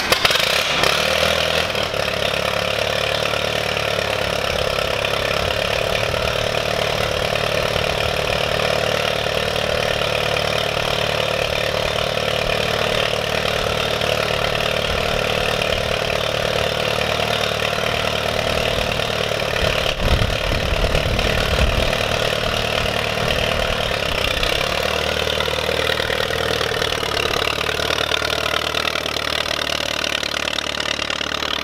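1940 Allis-Chalmers WC tractor's four-cylinder engine starting in the first second, then running steadily at a low idle. A brief low rumble comes about twenty seconds in, and near the end the tractor pulls forward.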